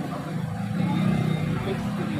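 A motorcycle passing by on the street, its engine rumble swelling to its loudest about a second in and then easing off.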